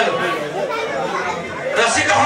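Several voices talking, with no music playing.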